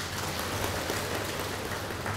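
Audience applauding: many hands clapping in a steady, even patter.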